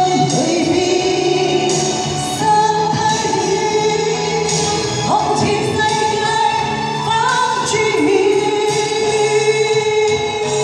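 A woman singing a slow ballad into a handheld microphone over recorded backing music, with long held notes.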